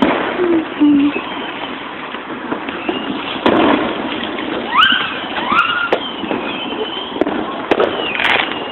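Fireworks going off: several sharp bangs spread through, over a steady noisy background.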